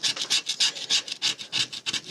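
A scratch-off lottery ticket being scratched: quick, rasping back-and-forth strokes, about seven or eight a second, rubbing the coating off the play area.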